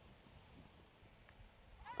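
Near silence: faint outdoor room tone from the broadcast feed, with a single faint tick.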